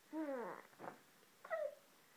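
Playful vocal sounds: a falling, meow-like voice glide, then a short higher-pitched squeal about one and a half seconds in.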